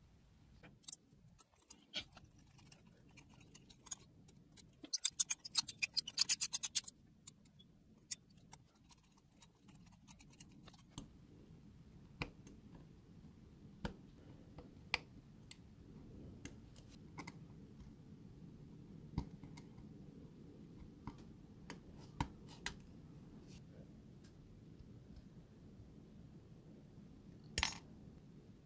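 A hobby knife blade scoring and cutting thin brass sheet: scattered sharp ticks and scrapes of steel on brass, with a quick run of rapid ticks about five to seven seconds in. Near the end comes one louder, short cut, as scissors snip the brass.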